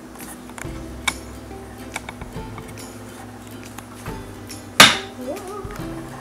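Soft background music with a few light clicks as a bar of cold-process soap is handled in a wooden wire soap cutter, then one sharp knock about five seconds in.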